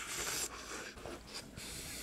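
Quiet sounds of a person taking thick queso through a funnel mouthpiece: a short airy suck in the first half second, then faint rustles and a few small clicks.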